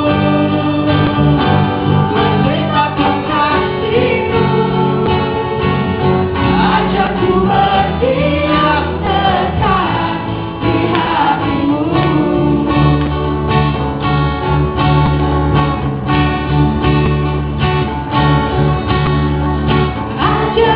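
A group of voices singing an Indonesian worship song in Bahasa Indonesia, accompanied by a steadily strummed guitar.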